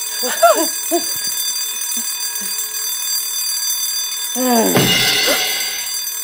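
Office fire alarm bell ringing continuously, a steady high ringing. Short vocal sounds come early, and a louder falling voice sound about four and a half seconds in.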